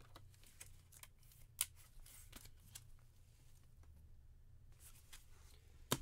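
Faint handling of trading cards in plastic sleeves: scattered small clicks and rustles over a low room hum, with one sharper click about a second and a half in.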